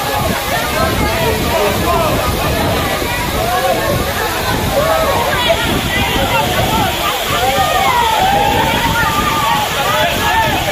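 Waterfall pouring steadily and splashing onto bathers, with many voices calling out over the rush of water.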